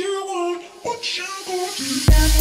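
High women's voices with no beat behind them: a few held, bending notes over a light hiss.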